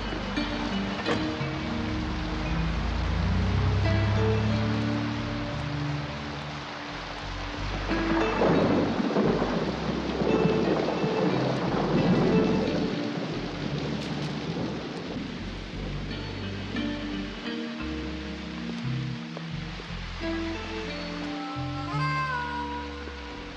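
Background score music with sustained notes over heavy rain. The rain noise swells louder for several seconds from about eight seconds in.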